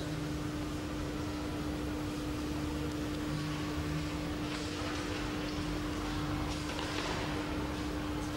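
Steady hum holding one pitch over a hiss of background noise: room tone with no distinct event.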